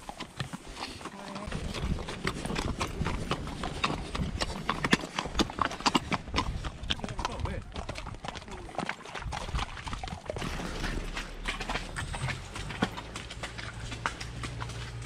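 Hooves of several horses striking a gravel and dirt track: a quick, irregular run of clip-clops.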